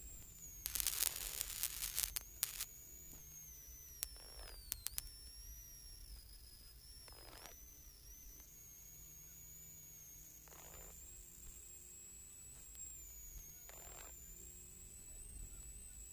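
Rally car intercom feed with comms lost: faint static and hiss over a steady high electronic whine and a low hum. Bursts of crackling come in the first few seconds and again around four seconds in, then short faint puffs of noise every three seconds or so.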